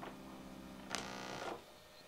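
A small click, then about a second in a sharp click with a brief buzz that dies away within about half a second, over a faint steady hum. It is typical of an audio cable being plugged into the Kawai ES8's line output to switch the sound from its built-in speakers to the iLoud Micro Monitors.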